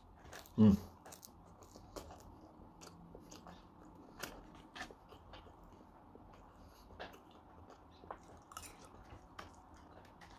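A person chewing a mouthful of bread roll, with faint, scattered crunching and clicking bites, after a short 'mm' under a second in.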